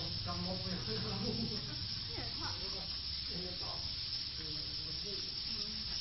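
A large flock of swiftlets twittering as it circles a swiftlet house: many overlapping calls blend into a dense, steady hiss, with scattered short chirps and quick pitch glides standing out above it.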